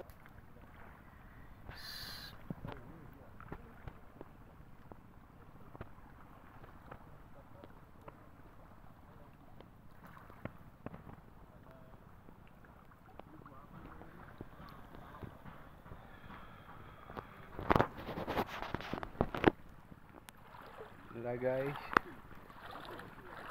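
Low, steady outdoor wind-and-water ambience by calm shallow sea, with a quick cluster of sharp knocks or splashes near the end and a brief voice just before the end.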